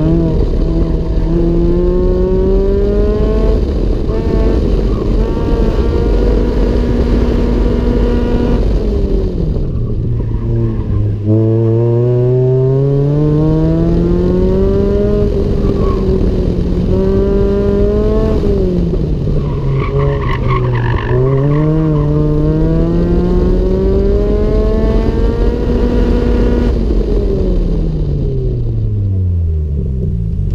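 Mazda MX-5 Miata's four-cylinder engine revving up and down through an autocross run. Its pitch climbs under acceleration and drops each time the driver lifts, with a short tyre squeal about two-thirds of the way through. Near the end the engine winds down as the car slows.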